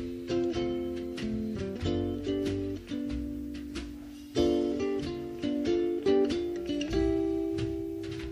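Electric soprano ukulele playing a jazz tune in a run of plucked and strummed chords, each dying away, over a wash-tub bass and drums.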